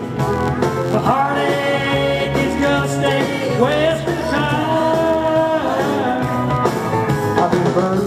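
Live country band playing an instrumental break, an electric guitar taking the lead with frequent string bends over the rhythm section.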